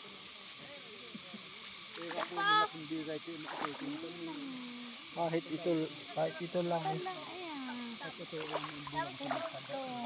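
People talking, with a steady hiss of shallow river water running behind them.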